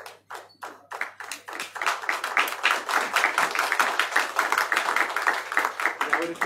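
Audience clapping by hand: a few separate claps at first, quickly building into steady, dense applause.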